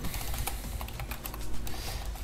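Keystrokes on a computer keyboard: a quick, irregular run of clicks as a shell command is typed. A low steady hum runs underneath.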